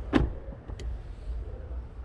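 Power-folding third-row seat backs of a Mercedes GL 350 raising themselves on their electric motors, with a low hum, a short knock about a fifth of a second in and a faint click near the middle.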